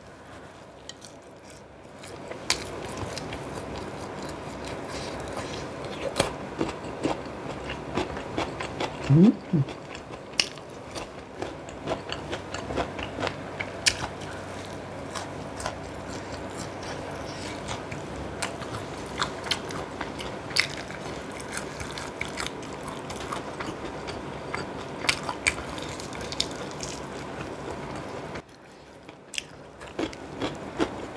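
Close-miked chewing of sauce-coated fried chicken: steady wet mouth sounds with many small crunches and clicks. About nine seconds in there is a brief hum that rises and falls in pitch.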